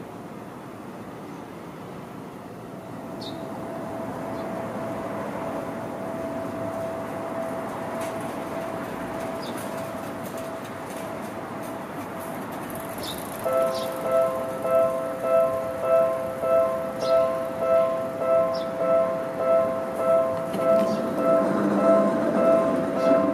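A yellow Seibu commuter train running at a station, with a steady hum and a faint steady tone. From about halfway through, an electronic two-note warning bell rings in even pulses a little over once a second, while the train's low rumble swells near the end.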